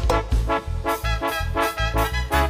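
Duranguense band music, instrumental: brass and a bass line in an even oom-pah beat, low bass notes alternating with short chord stabs about twice a second.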